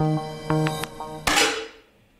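Plucked guitar music, then, about a second and a quarter in, a single sharp 10 m air rifle shot that cuts the music off, followed by a short fading hiss.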